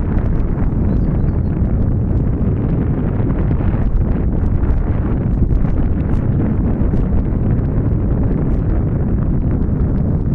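Strong wind buffeting the camera's microphone: a loud, steady, low rumble with faint crackles.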